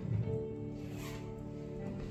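Soft background music: one sustained chord held steady, played quietly under the sermon's pause.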